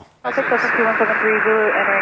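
A pilot's position report heard over the aircraft's VHF radio: a man's voice, narrow and tinny, over steady static hiss, starting about a quarter second in.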